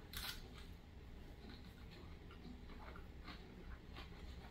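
Quiet eating sounds: a soft bite into a tuna burger sandwich just after the start, then faint scattered clicks of chewing.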